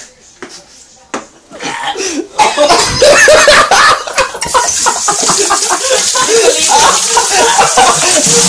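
Loud, sputtering coughing from someone choking on a mouthful of dry cinnamon, mixed with laughing and shouting voices. It starts with a few sharp clicks, builds about two seconds in and stays loud.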